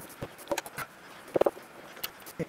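Scattered short knocks and clicks of an insulated hand tool and gloved hands working on the bolts of a battery junction box, the loudest about one and a half seconds in.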